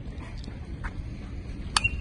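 Low outdoor background noise, then about three-quarters of the way in a single sharp crack with a brief ringing tone as the pitched baseball reaches home plate.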